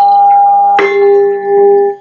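Bronze gamelan instruments ringing with long, steady tones, struck again just under a second in and left to ring on.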